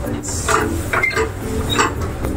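Short mechanical clatters and rustles as vinyl sheet is handled and fed into a vinyl cutting plotter, the clearest about half a second in and again near the end, over a steady low hum.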